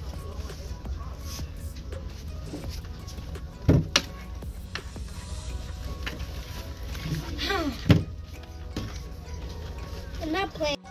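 Background music over a steady low hum of room noise, with two sharp knocks about four seconds and eight seconds in, and a brief voice sound just before the second knock.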